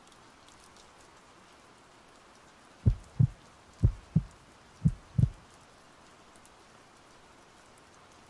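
Heartbeat sound effect: three low double thumps, one pair about every second, starting about three seconds in. Faint rain runs underneath.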